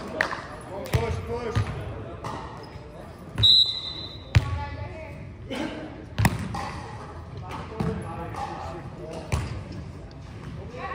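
Volleyball being hit and bounced in a large gym: a string of sharp slaps and thuds of hands on the ball, the loudest about four and six seconds in as the ball is served, with a brief shoe squeak on the hardwood and players calling out, all echoing in the hall.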